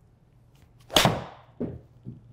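Titleist T150 iron striking a golf ball off a hitting mat: one sharp strike about a second in, followed by a duller thud about half a second later.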